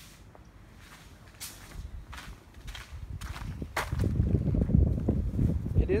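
Footsteps on plastic tarp sheeting, about two steps a second, starting about a second and a half in. Wind buffets the microphone with a loud low rumble over the second half.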